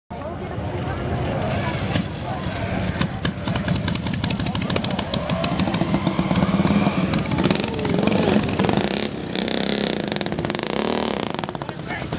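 Antique board-track racing motorcycle engine firing in a fast staccato of exhaust beats as it is push-started and ridden off, thinning out after about nine seconds, with people talking.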